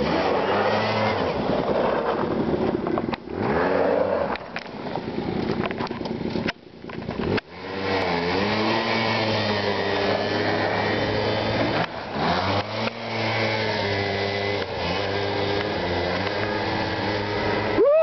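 Quad bike (ATV) engines running and revving while riding, the engine note rising and falling in pitch as the throttle changes.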